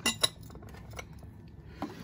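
Glass bedside carafe and its tumbler knocking together as they are handled, a few short clinks in the first second.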